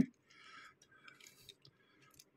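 Faint handling noise of a small plastic toy fire truck being turned over in the fingers: a soft rub, then a few small, faint clicks.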